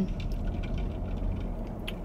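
Low steady hum of an idling car heard inside its cabin, with a faint tick near the end.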